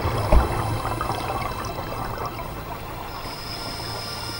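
Underwater bubbling and crackling over a steady low hum, with one dull thump about a third of a second in; a thin high tone comes in near the end.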